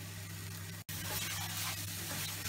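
Onion-tomato masala sizzling in a steel kadai while a wooden spatula stirs and scrapes through it, with a brief dropout just before the middle.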